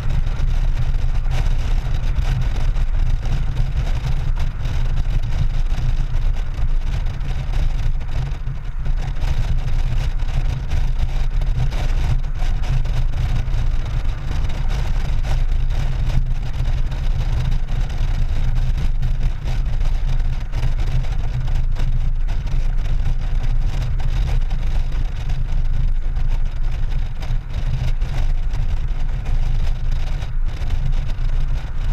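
Steady low rumble of a Honda Gold Wing GL1800 touring motorcycle cruising at highway speed, wind rushing over the microphone mixed with the drone of its flat-six engine and the tyres on the road.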